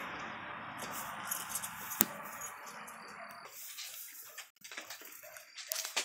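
Rustling and handling of a nylon shoulder strap and its plastic buckle as the strap is threaded and adjusted, with one sharp click about two seconds in and a few faint clicks later.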